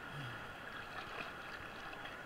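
Whitewater rapids rushing and splashing, a steady hiss of fast-moving water.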